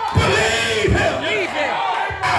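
A preacher shouting wordless cries through a hand microphone, the pitch rising and falling, with congregation members calling out around him.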